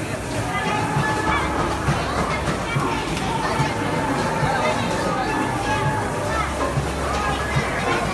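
Busy indoor amusement-arcade din: background music with a steady beat under the chatter of many voices.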